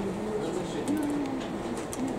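A voice speaking quietly, over a few light clicks and plops of cherry tomatoes dropped one at a time into a plastic cup of water.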